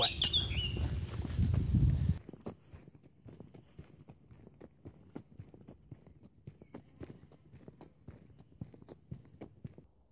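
Footsteps on a dirt woodland path: a quick, uneven run of light steps. A loud low rumble, wind or handling noise on the phone's microphone, fills the first two seconds.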